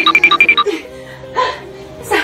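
A rapid run of short electronic beeps at a few different pitches in the first half-second, over steady background music. A brief voice sound comes about a second and a half in.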